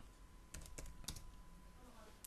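Faint computer keyboard keystrokes: a few quick taps about half a second to a second in.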